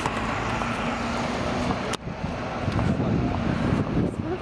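City street traffic noise: a steady rumble of passing vehicles with a faint engine hum, broken by a brief dropout about halfway through.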